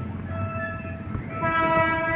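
A horn sounding two long steady tones one after the other, the second lower in pitch, over low street noise.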